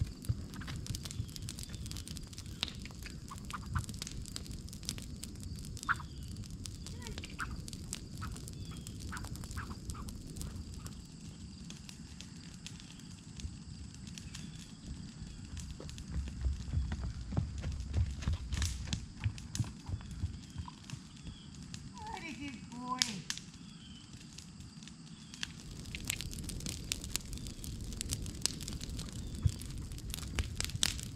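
Brush-pile fire crackling and popping, over a low rumble of wind on the microphone. A brief gliding call sounds about two-thirds of the way through.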